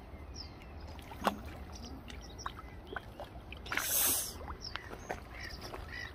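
Light water splashing and sloshing as a hooked carp is drawn into a landing net at the bank, with one louder splash about four seconds in and a few small knocks, over a low rumble of wind on the microphone.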